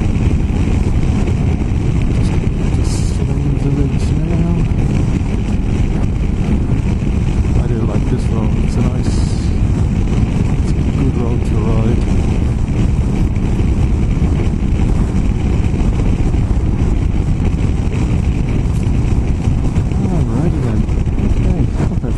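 BMW F800GS parallel-twin motorcycle engine running steadily at cruising speed, with wind noise on the microphone.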